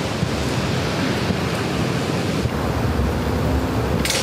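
A steady rushing noise like wind, even and unbroken, with no distinct thumps or spring creaks standing out.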